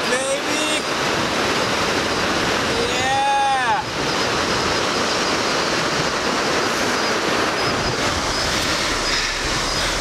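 Small surf washing up the beach, heard as a steady rushing noise mixed with wind on the microphone. A short vocal shout that rises and falls in pitch comes about three seconds in.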